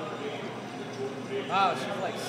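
Steady background chatter of a busy restaurant, with one short voiced sound from a person about one and a half seconds in.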